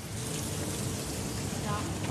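Hot wok sizzling steadily as lime juice goes into the sweet and sour sauce.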